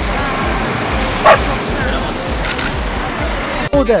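A dog barking, with one short loud bark about a second in, over background music with a steady beat and the chatter of people around.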